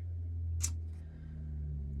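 A steady low hum, with one short hiss about half a second in.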